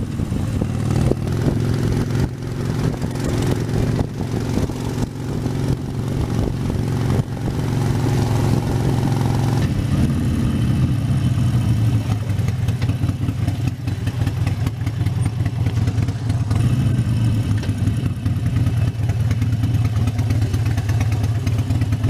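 Harley-Davidson Sportster 72's air-cooled 1200 cc V-twin running steadily while being ridden. About ten seconds in, the engine note falls as the bike slows into traffic.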